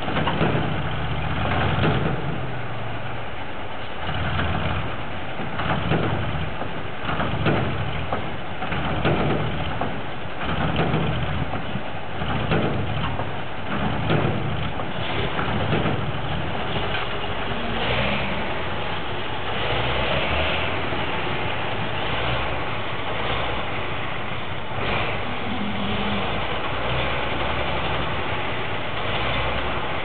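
Heavy diesel engines of a MAZ-5549 dump truck and a TO-18 wheel loader running. The sound swells and eases every second or two through the first half, then runs steadier.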